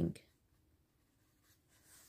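Faint scratching of a pen writing on a workbook page, after a word is spoken at the very start.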